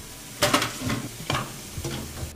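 Kitchen faucet running into a stainless steel sink, the water splashing over small plastic parts, with about four light knocks and clatters as the plastic pieces are handled in the stream.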